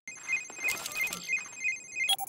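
Cartoon sound effect of a wrist-worn video communicator (the pup pad) ringing with an incoming call: a repeating electronic ringtone of short high beeps in quick pairs.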